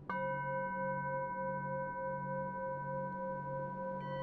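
A singing bowl struck once right at the start and left ringing, its several tones held steady over a slow, pulsing waver low down.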